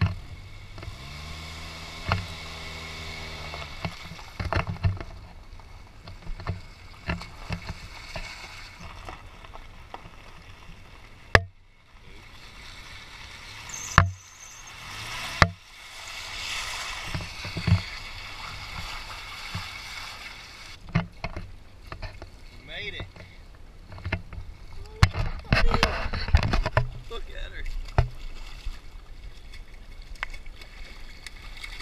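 A car driving through a shallow creek ford: water washing and splashing around the tyres over the running engine, with a number of short, sharp knocks along the way.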